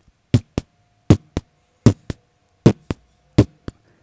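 Heartbeat sound effect: five lub-dub double thumps, each a strong beat then a softer one, coming a little under a second apart, with a faint steady tone behind the middle beats.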